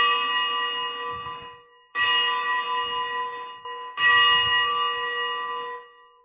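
Consecration bell struck three times, about two seconds apart, each stroke ringing out with several tones and fading away. It is rung at the elevation of the chalice just after the words of consecration.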